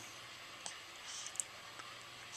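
Faint wet clicks of a baby sucking on her fist: a few soft clicks, one about a third of the way in and another just past halfway, over quiet room tone.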